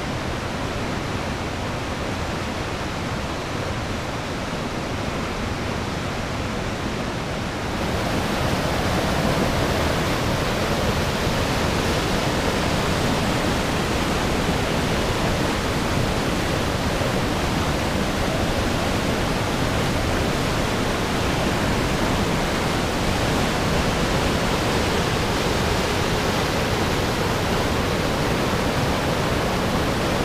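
Mistaya River whitewater rushing through a narrow rock canyon, a steady, even rush of water that grows louder and brighter about eight seconds in.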